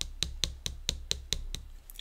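A quick run of about eight or nine light taps, evenly spaced at roughly four or five a second.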